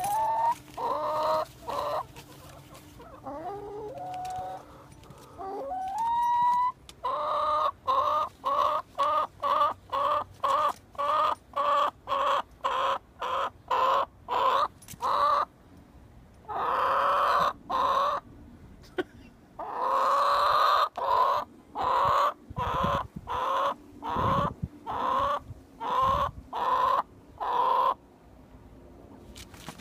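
Barred Rock hen calling loudly and insistently: long runs of short squawks, about two a second, broken by short pauses and a few longer drawn-out calls. This is a hen's complaining cackle at being coaxed out of the coop into the snow. A few low bumps come late on.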